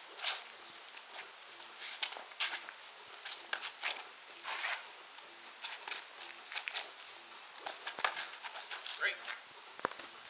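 Sneakers scuffing and stepping on asphalt in quick, irregular bursts as two people shift, lunge and crouch. A voice says "Great" near the end.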